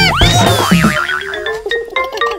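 Cartoon sound effect over a children's music track: a whistle-like tone glides steeply up and falls away, then wobbles up and down. Light struck notes follow in the music.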